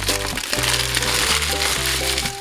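Background music with held bass notes, over the crinkling of a paper burger wrapper being folded around a burger by hand.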